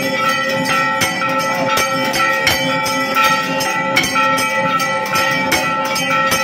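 Brass temple bells ringing continuously, struck a few times a second, their tones ringing on between the strikes.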